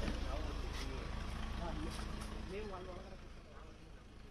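Faint voices of people talking at a distance over a low, steady outdoor background noise, the whole fading gradually.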